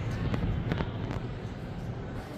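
Background noise inside a large store: a steady low rumble with a few light knocks and faint voices.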